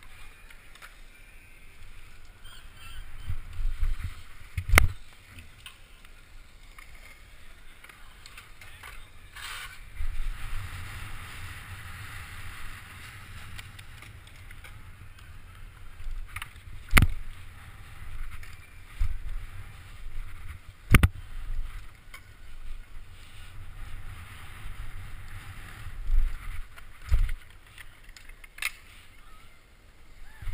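Wheels rolling over skate-park concrete: a steady low rumble, broken by about five sharp knocks as the wheels hit joints, ledges or landings, the loudest about a third and two thirds of the way through.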